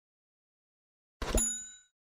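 A notification-bell ding sound effect about a second in, opening with a brief falling swoop, then ringing and fading out within about half a second.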